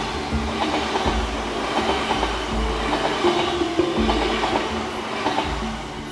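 Indian Railways passenger coaches rolling past a platform: a steady rumble of wheels on rail, with a low knock from the wheels every second or so.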